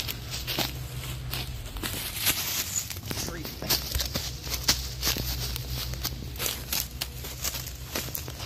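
Running footsteps crunching through dry leaf litter and twigs on a forest floor, in quick, uneven steps, over a steady low rumble.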